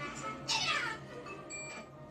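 A single meow-like call about half a second in that falls steeply in pitch, over quiet background music, with a brief high beep near the end.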